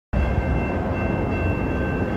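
Low, steady rumble of an approaching freight train, with a few faint steady high-pitched tones running over it.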